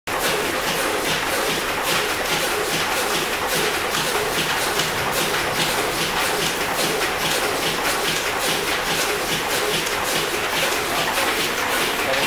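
High-speed steam engine driving a DC dynamo, running steadily: an even hiss with a fast, regular mechanical beat.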